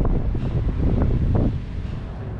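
Low rumble of wind on the camera microphone, with a few short knocks or scrapes in the first second and a half.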